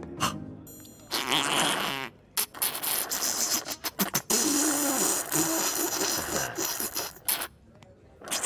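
Soup slurped up through a drinking straw, a cartoon sound effect: loud sucking and gurgling that starts about a second in, breaks off briefly, and runs on until near the end, when the bowl has been drained.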